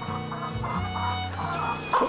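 A flock of chickens clucking over background music of long held notes, with a short louder cluck near the end.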